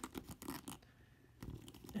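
Faint clicks and plastic rubbing from hands posing a Mafex RoboCop action figure, its torso joints being bent and the figure turned.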